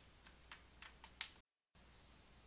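Faint clicks from a computer input device while on-screen writing is erased: about five light clicks within a second or so, then a brief dead-silent gap.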